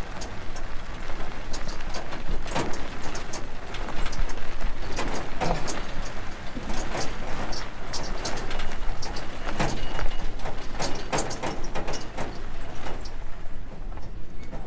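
Vehicle tyres rolling slowly over a gravel and dirt lot, gravel crunching and popping underneath in many irregular clicks.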